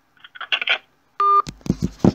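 A short electronic telephone beep a little over a second in, the tone of the phone call ending. Rock music starts just after it.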